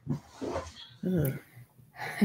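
A woman's voice in short, wordless laughs and vocal sounds, three brief bursts with no words.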